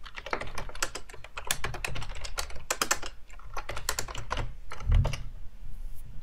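Typing on a computer keyboard: a quick run of keystroke clicks, then a single dull, heavier thump about five seconds in.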